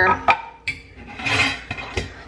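A metal lid being twisted and lifted off a large glass canister: a few sharp clinks and a short scraping rub in the middle.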